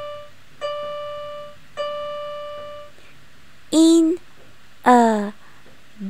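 The same high piano-like keyboard note struck three times, about a second apart, each ringing on and fading away.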